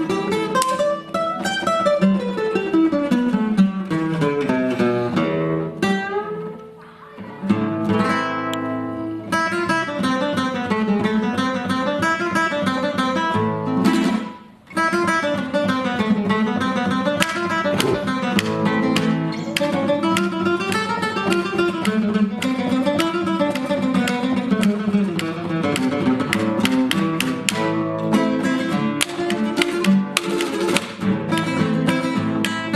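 Solo acoustic guitar played fingerstyle in fast, flowing runs and arpeggios that climb and fall, in a flamenco-like manner. The playing eases off about six seconds in and breaks off briefly about halfway through before picking up again.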